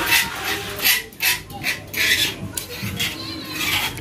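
Kitchenware being handled: a metal kettle and a spoon clinking and scraping against a cup, with irregular rustling and rubbing.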